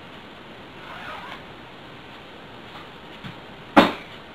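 Faint rustling of hands handling and knotting fishing line over a steady hiss, then a single sharp knock near the end, the loudest sound here.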